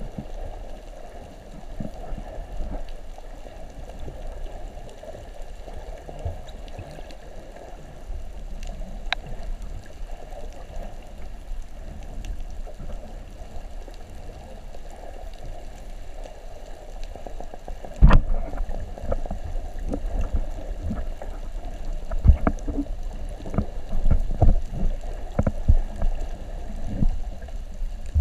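Underwater ambience heard through a waterproof camera housing: a steady, muffled wash of water. About two-thirds of the way in a sharp thump sets off a run of irregular knocks and bumps.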